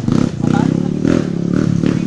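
Dirt bike engines running steadily at idle, with people talking over them.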